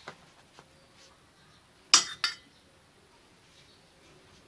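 A metal spoon clinks against a dish as potato sabzi is spooned into a lunch box compartment: a couple of light taps early, then two sharp clinks in quick succession about two seconds in.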